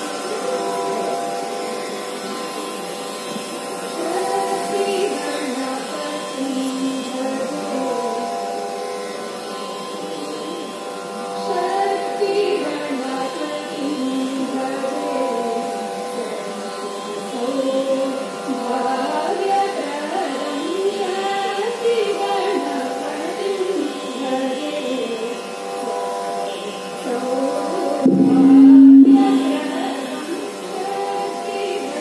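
Two women's voices singing a devotional prayer song, a slow, ornamented melody wavering over a steady drone. There is a louder low held note near the end.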